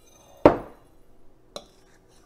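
Glass Pyrex measuring cup set down on the counter with one sharp knock about half a second in, followed by a light click near the end.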